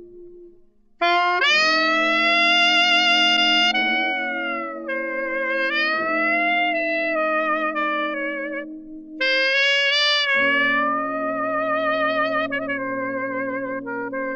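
Alto saxophone playing a slow ballad melody in long held notes with wide vibrato, sliding up into its notes, over soft sustained chords underneath. It enters about a second in and pauses briefly between phrases near the end.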